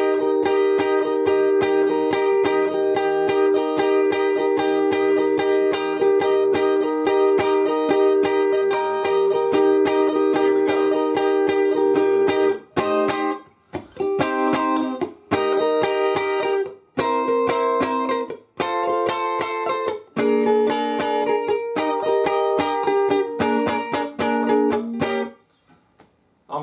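Strat-style electric guitar strumming a blues chord progression in E-flat. It vamps rhythmically on the E-flat chord for about twelve seconds, then plays short strummed chords with brief gaps as it moves through the 6, 2 and 5 (C7 up to B-flat 7) back to the 1. It stops shortly before the end.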